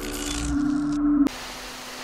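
Electronic logo sting: a held synth tone with overtones that cuts off suddenly about a second in, then a burst of static hiss as a glitch effect.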